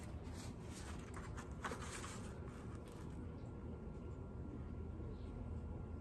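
Quiet room tone with faint rustles and soft taps as the pages of a vintage hardback picture book are handled and turned, the clearest rustle about a second and a half in.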